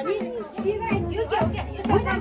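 Several people's voices talking over one another, with music and a few sharp clicks mixed in.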